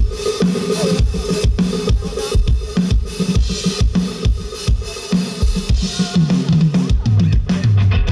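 Live rock band heard through a festival PA: a steady drum-kit beat of kick and snare over a bass line, with no singing. Near the end the drums thin out and the bass steps down.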